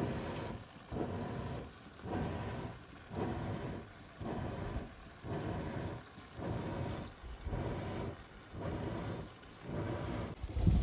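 A hand sloshing and squelching through churned buttermilk in a pot, scooping and squeezing the butter together in a steady rhythm of about one stroke a second.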